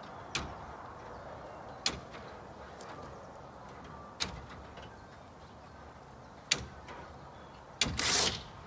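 Tin snips cutting through chicken wire one strand at a time: five sharp metallic snips, spaced a second or two apart.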